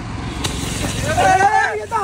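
A burning Diwali ground firework hissing and fizzing over a low rumble, with one sharp crack about half a second in. A man's voice calls out near the end.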